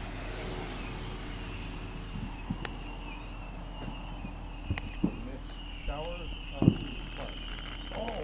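Distant fireworks: a few scattered pops, then a louder low boom near the end, over a steady high-pitched drone.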